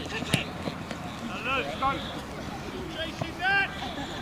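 Short, high-pitched shouts from rugby players or spectators on the pitch, several over a couple of seconds and the loudest near the end, with a sharp knock about a third of a second in.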